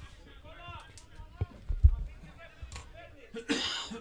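Football-match ambience: faint voices around the pitch and two dull thumps about one and a half seconds in. Near the end comes a loud shout of "πάμε" ("come on").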